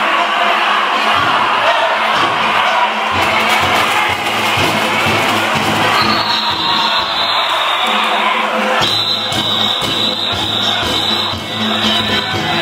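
Danjiri float's festival music of taiko drums and hand gongs, with its beat growing stronger as the float draws near. Over it come the shouts of a large crowd of rope-pullers running the float.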